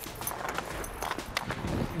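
Hockey skates scraping across rink ice, with scattered light clicks and taps of a stick handling a puck.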